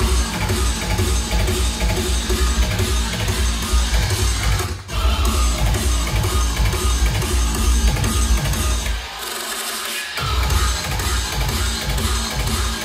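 Drum and bass (techstep) DJ mix on a club sound system, with heavy sub-bass under a fast beat. The bass comes in right at the start, the whole mix cuts out for an instant just before five seconds in, and the low end drops away for about a second near nine seconds before slamming back in.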